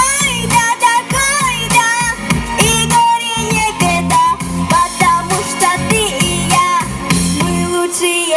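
A girl singing a pop song into a handheld microphone over instrumental backing with guitar, some held notes wavering with vibrato.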